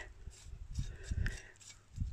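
A loose terracotta floor tile being handled, giving a few faint low knocks and scrapes against the soil and the neighbouring tiles.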